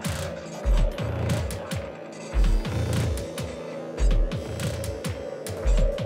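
Electronic dance track (Congo techno) played live from a pad controller. Very deep bass drum hits come about every second and a half, with short downward-sliding pitched drums and busy clicking percussion between them.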